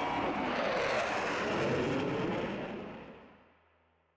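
Steady jet engine noise of two CF-18 Hornet fighter jets flying overhead, fading away to silence in the last second or so.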